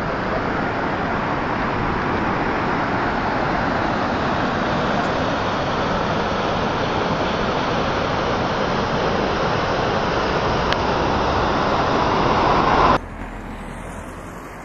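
Steady rush of river water pouring over a weir and churning into white water below. It cuts off abruptly near the end, giving way to a quieter hiss with a faint rising tone.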